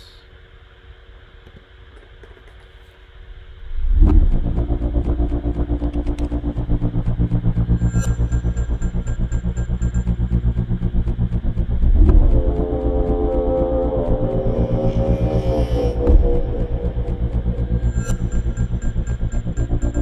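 Sound-design mix of processed field recordings, with a pitched airplane drone underneath, playing as a dark, pulsing music-like texture. It starts faint and swells suddenly about four seconds in, with another swell and rising tones around twelve seconds.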